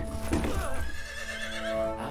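A sudden, wavering cry that sounds like a horse's whinny sets in about half a second in, over the song's sustained music drone.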